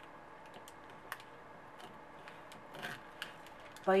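Scissors snipping through a thin paper sewing pattern, a few soft, scattered clicks of the blades, one sharper about a second in.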